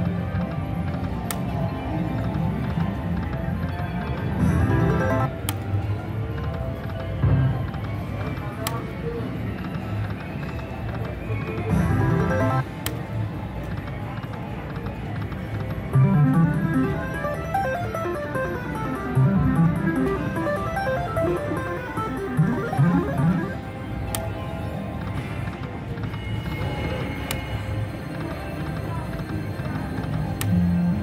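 Buffalo video slot machine playing its electronic reel-spin sounds spin after spin, with a run of rising and falling tones from about halfway through as a small win is counted up, over casino background noise.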